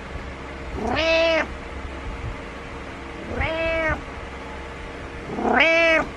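Domestic cat meowing three times, about two and a half seconds apart. Each meow rises in pitch at the start and then holds. These are insistent calls to get its owner out of bed.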